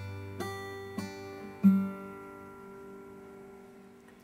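Acoustic guitar chord finger-picked one string at a time: three plucked notes about half a second apart, then the chord left ringing and slowly fading.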